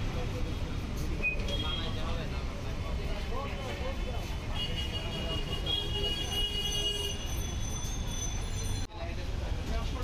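Busy street background: a steady low traffic rumble with people talking in the background. A high-pitched squeal rises out of it for a couple of seconds around the middle, and the sound briefly drops out near the end.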